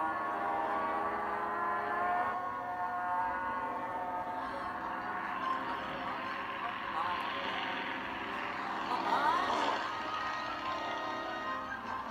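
Soundtrack of a video playing through a tablet's small speaker: music and sound effects, with a rushing noise in the middle and quick sliding tones about three-quarters of the way through.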